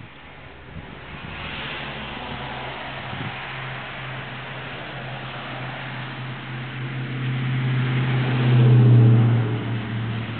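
A motor vehicle's engine running with a steady low hum and a hiss over it. The sound grows louder to a peak about nine seconds in, then eases off.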